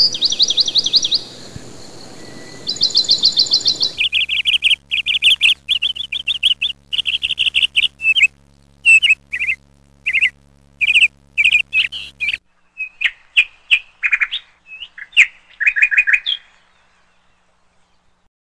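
Small songbird chirps and trills from several recordings joined one after another. Fast trilling notes come in the first four seconds, then a long run of short chirps stops about a second and a half before the end.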